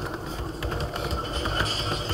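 Computer keyboard typing: light, irregular key clicks over a steady low background noise.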